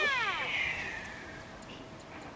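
The electric motor and 6.5×5.5 propeller of a Fun Jet RC flying wing, a 2600KV brushless motor, whining and dropping steeply in pitch over the first half second. A rushing hiss of air follows and fades away.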